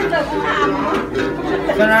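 A man's voice chanting a Tày Then ritual song, with a đàn tính lute plucked along underneath.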